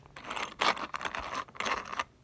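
Irregular scraping and light clicks of a small diecast toy tractor being handled and slid on a plastic playset runway piece.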